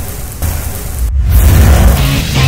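Loud title-sequence intro music with a deep bass rumble under a rushing hiss, cutting out for a moment about a second in.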